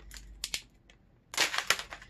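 Packaging of a small bottle of cosmetic enhancing drops being opened by hand: a few light clicks, then about a second and a half in a loud burst of crackling and snapping.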